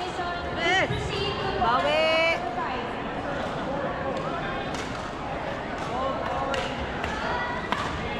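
Badminton rally on a wooden indoor court: sharp racket strikes on the shuttlecock, several in the second half, roughly a second apart, and short high squeaks of court shoes on the floor early on, over the chatter of the hall.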